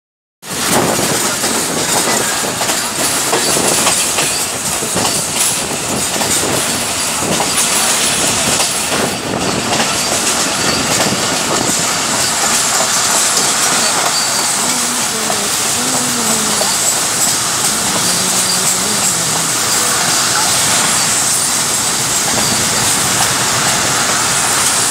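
Passenger train running along the track, heard from inside a coach at an open window: a steady loud rush of wheel and track noise, with clicks of the wheels over rail joints mostly in the first half.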